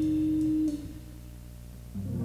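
Jazz combo holding a steady chord that stops sharply about two-thirds of a second in. About a second of quiet follows, with the notes dying away, and then the band comes back in with new notes near the end.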